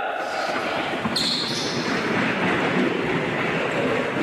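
Thuds and footfalls of boxers moving fast on a hard gym floor as a training session starts, with voices mixed in.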